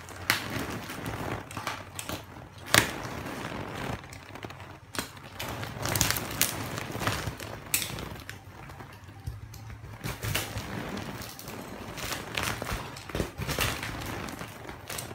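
Clear plastic wrapping crinkling and rustling as it is handled and pulled off a quilted latex mattress topper. The crackles are irregular, with one sharp crack about three seconds in.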